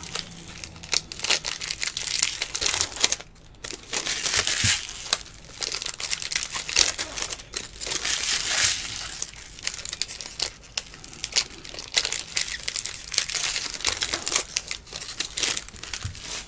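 Foil wrapper of a Bowman baseball card pack crinkling and tearing as it is opened. Trading cards are then slid and flicked through one by one in a stack, an irregular run of short rustling strokes.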